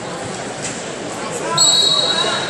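A referee's whistle blows a single sharp blast about a second and a half in, over steady crowd chatter and voices.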